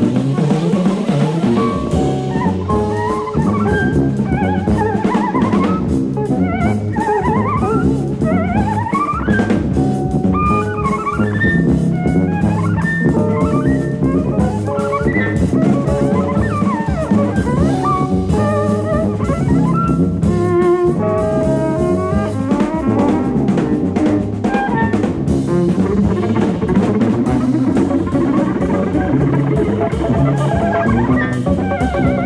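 Live jazz quintet of alto saxophone, tuba, guitar, cello and drums playing, with a busy drum kit under quick melodic runs and a moving low tuba line.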